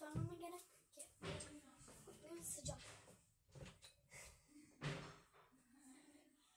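A wardrobe door being opened, with a few quiet knocks and thumps of the door and its contents being handled.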